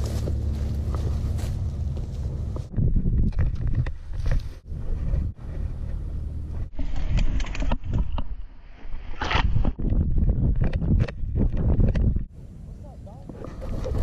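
Wind and jostling noise from a GoPro strapped to a Siberian husky's harness as the dog runs through brush and grass. A steady low rumble for the first few seconds, then irregular bursts of knocking and buffeting as the camera bounces.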